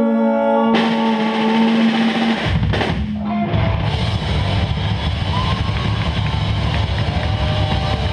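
Live rock band: a held sung note with cymbals and guitar coming in under it, then about two and a half seconds in the drums and bass join, and the full band plays on loudly.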